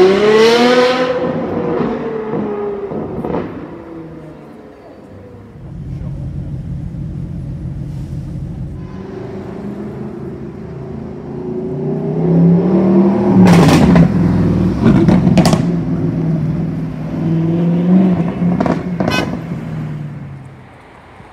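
Ferrari F12's V12 revving hard as it pulls away, its pitch climbing, then fading into a steady low drone of traffic. From about twelve seconds in, another supercar's engine revs loudly, with several sharp exhaust cracks.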